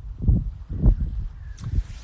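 Wind buffeting a phone's microphone in low, rumbling gusts, with two strong surges, one early and one about a second in.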